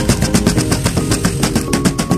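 Rapid cleaver chops on a plastic cutting board, about nine a second, mincing raw chicken breast, with background music underneath.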